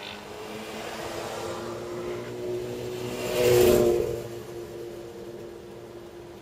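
A car running steadily along the road, with engine hum and road noise, as another vehicle swells up and passes close by about three and a half seconds in, then fades.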